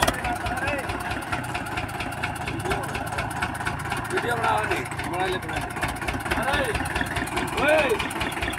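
Eicher tractor's diesel engine running steadily under load with a regular low pulse as it hauls a heavily loaded trolley through soft ploughed soil.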